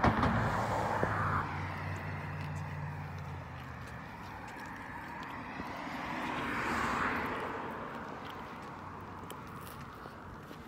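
A passing motor vehicle: a steady low engine hum for the first few seconds, then a swell of rushing noise that peaks about seven seconds in and fades away. A sharp click comes right at the start.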